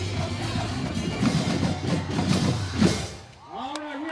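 Percussion ensemble of drum-corps players drumming a fast rhythm with bass drums. A loud final hit comes near three seconds in, and the playing stops.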